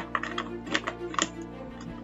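Plastic Lego bricks clicking as they are handled and pressed together: a quick run of small sharp clicks in the first second and a half. Background music with steady held notes plays underneath.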